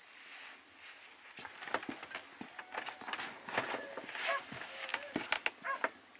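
A fur coat being pulled on and adjusted: a run of rustling and handling knocks starting about a second and a half in, with a few short vocal sounds among them.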